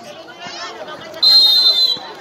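A referee's whistle blown once, a single high steady blast of about three-quarters of a second starting just past a second in, over faint crowd chatter.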